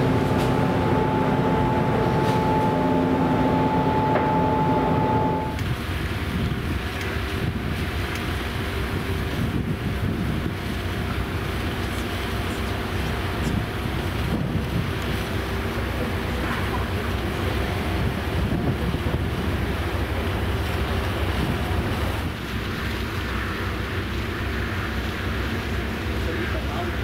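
Ship noise aboard the ferry Schleswig-Holstein. For the first five seconds or so it is a steady machinery hum inside the ship, with two steady tones, one low and one higher. After that it is wind buffeting the microphone out on deck over the low rumble of the ship.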